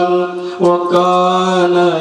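A man's voice chanting in long, held melodic notes, the sung delivery of a waz sermon into a microphone, with a short break for breath about half a second in.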